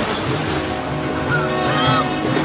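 Rushing floodwater churning, under a dramatic orchestral score that settles into a held chord about half a second in.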